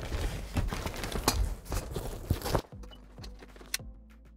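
Rustling and a run of clicks from a fabric GVM softbox being handled and fitted onto a studio light, which cut off suddenly about two and a half seconds in; faint background music follows.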